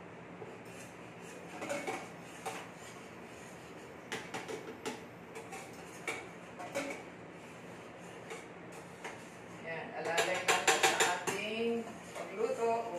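Metal utensil clinking and scraping in a small stainless steel saucepan as it is stirred, in scattered taps, then a quick run of rapid clinks about ten seconds in. A faint steady hum sits underneath.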